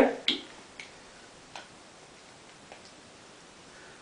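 A few sparse, light clicks and taps from hands handling a small ISP noise gate pedal and working its knob, over low steady hiss.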